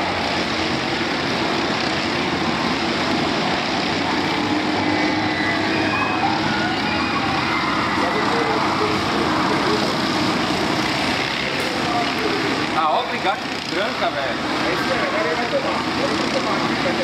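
Several racing kart engines running together as the pack laps the circuit, their notes overlapping and rising and falling with throttle through the corners, with a stretch of sweeping pitch changes near the end.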